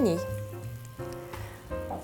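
Eggs and sliced mushrooms frying in oil in a pan, a soft steady sizzle.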